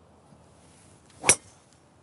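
Golf driver striking a teed ball: one sharp, high-pitched crack about a second and a quarter in. The golfer afterwards takes the ball to have been cracked, as it flew oddly.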